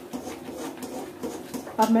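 A steel ladle stirring thick semolina halwa in a steel kadhai, with faint, irregular scraping against the pan. A woman starts speaking near the end.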